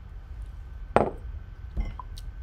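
A glass whiskey tasting glass clinks sharply once as it is set down, about a second in, followed by a softer knock near the end.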